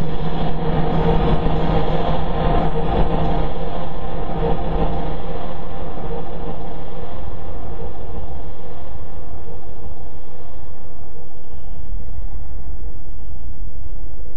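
A loud, steady rumbling noise with a low hum laid over it. It is uneven for the first few seconds, then settles into an even rumble.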